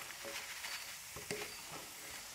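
Ash plantain cubes deep-frying in hot oil, a steady sizzle, with a couple of short knocks as a stainless mesh strainer lifts them out of the wok.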